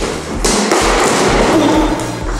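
A large cardboard box being hauled up stone stairs, rustling, scraping and thudding against the steps. Underneath is background music with a steady beat.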